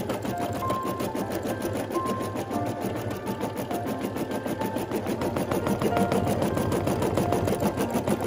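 Embroidery machine stitching an appliqué design, its needle going up and down in a rapid, even rhythm.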